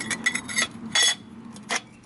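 Perforated steel plate scraping and clinking against firebrick as it is pushed into place in the forge bed: a run of quick scrapes, then two sharper metallic clinks, the loudest about a second in and another near the end.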